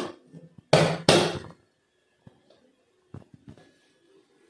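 Two sharp hand slaps on the bottom of an upturned stainless steel vessel, about a third of a second apart, to knock a baked cake loose onto the plate beneath. A few faint knocks follow.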